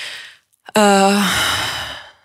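A woman's voice: a short intake of breath, then a drawn-out hesitation sound ("eee") that trails off into a breathy sigh while she gathers her thoughts.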